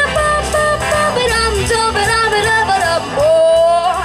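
A young girl scat-singing wordless syllables into a handheld microphone over an instrumental backing track, the melody quick and bending, then one long held note near the end.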